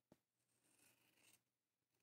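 Near silence, with one faint tick just after the start.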